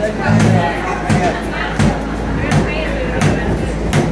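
A live band's drum kit keeping a steady beat, a kick-and-snare hit about every three-quarters of a second, under loud crowd chatter in a bar room.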